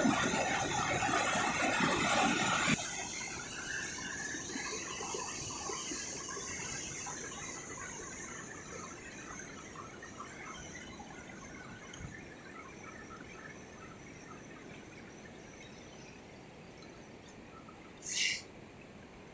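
Rushing whitewater of the Yellowstone River rapids: a steady roar that drops suddenly about three seconds in, then fades steadily.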